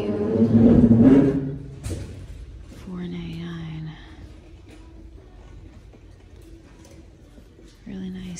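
A woman's voice in a drawn-out, wordless exclamation in the first second and a half, the loudest sound here, then a short steady hummed "mm" about three seconds in. A light knock near two seconds as the metal leaf plaque is handled and turned over.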